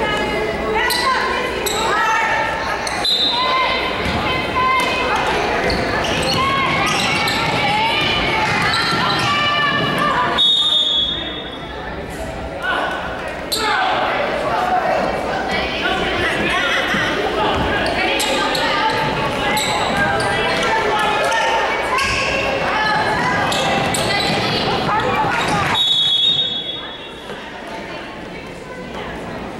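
Voices of spectators and players calling out across an echoing school gym during a basketball game, with a basketball bouncing on the court. A referee's whistle sounds twice, about ten seconds in and near the end, and the noise drops a little after each.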